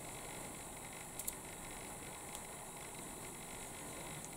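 Steady low background hiss with no speech, broken by a faint click or two a little over a second in.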